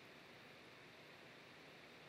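Near silence: faint steady hiss of room tone or recording noise.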